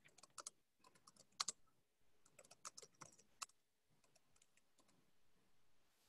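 Faint typing on a computer keyboard: quick, irregular key clicks that thin out after about three and a half seconds.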